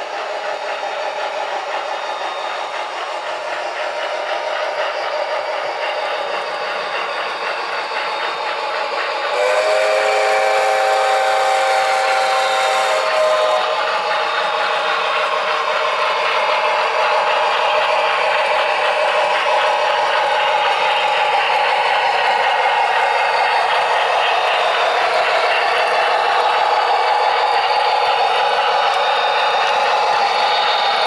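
Sound-equipped OO-scale model of a Victorian Railways R Class steam locomotive whose onboard speaker gives one steam-whistle blast of several notes, held for about four seconds starting about nine seconds in. Under it runs a steady model-train running noise that grows louder as the locomotive approaches.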